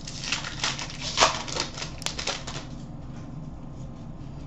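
A stack of hockey trading cards being flipped through by hand: a quick run of light card flicks and slides for about the first two and a half seconds, then quieter handling.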